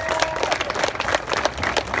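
Crowd applauding: many hands clapping at once in a dense, irregular patter.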